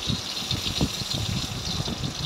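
Brinjal (eggplant) slices shallow-frying in hot oil in an iron kadai: a steady sizzle with many small irregular pops and crackles.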